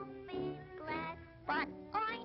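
Early-1930s cartoon song: a high, nasal female voice singing over a small orchestra, with a quick upward swoop in the voice about one and a half seconds in.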